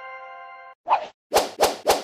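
A chiming answer-reveal sound effect rings out and fades, then a short pop about a second in and three quick popping hits about a quarter second apart near the end, a cartoon-style transition sound effect.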